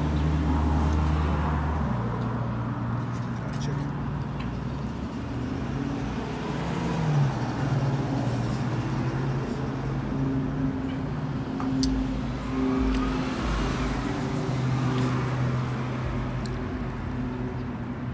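Street traffic: a vehicle engine running with a steady low hum that shifts in pitch, and a car going by about two-thirds of the way through.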